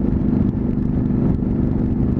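Honda CTX700's parallel-twin engine running steadily at cruising speed on the highway, with a steady rush of wind and road noise over it.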